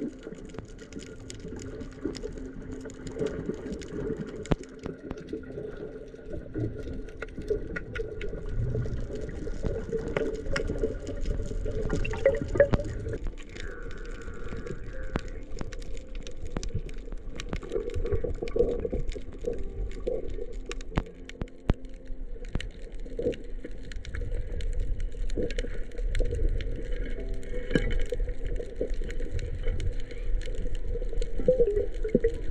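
Underwater sound picked up by an action camera: a continuous muffled low rumble of water movement, with scattered sharp clicks and crackles throughout.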